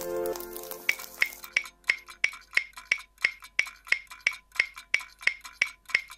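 The last held chord of background music fades away. A steady ticking follows from about a second in: sharp, even clicks about three a second, each with a short high ring.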